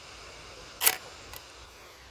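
Shutter of a manual 35 mm film SLR being released: one sharp mechanical clack a little under a second in, followed by a much fainter click about half a second later.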